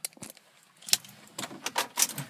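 Car keys jangling and clicking, a few separate clicks and then a quicker run of them near the end, as the key is put into the ignition.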